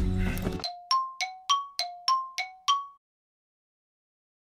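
Edited-in chime jingle: about eight bell-like strikes, roughly three a second, alternating between a lower and a higher note, each ringing briefly and fading.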